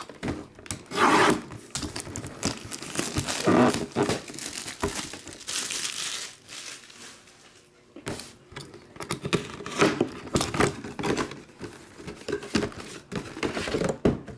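A cardboard hobby box being unwrapped and opened by hand: its wrapping crinkles and tears in noisy stretches, then short scrapes and clicks follow from about eight seconds in as the cardboard is handled and the box is opened.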